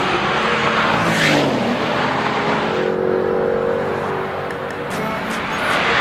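A sports car driving past at high speed: engine and tyre noise rushing by. There is a louder surge about a second in and another near the end, with a steady engine note between them.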